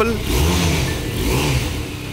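Benelli TRK 502 motorcycle's parallel-twin engine running with two throttle blips, the revs rising and falling: a longer one about half a second in and a shorter one about a second and a half in.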